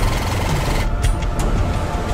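Cartoon sound effect of a prize wheel spinning: a fast, steady run of clicks over background music.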